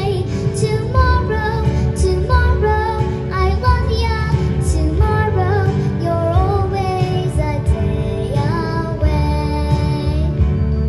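A young girl singing solo into a microphone, her voice amplified through a PA speaker over a sustained instrumental accompaniment with a steady bass.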